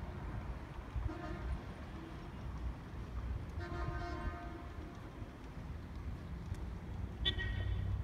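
Vehicle horns honking three times over a low rumble. The middle honk is the longest, at about a second, and the last, near the end, is higher pitched.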